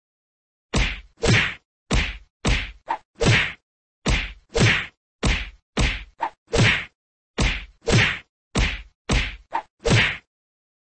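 Edited-in fight sound effects: sharp punch hits alternating with swelling whooshes, about two a second in a repeating rhythm, with dead silence between them.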